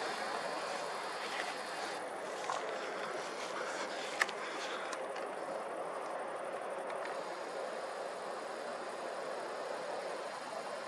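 Steady, even outdoor background noise, with a single short click about four seconds in.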